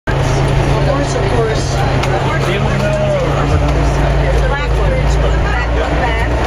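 Steady low drone of a 6x6 off-road truck's engine while driving on a dirt road, heard from on board, with indistinct chatter from passengers over it.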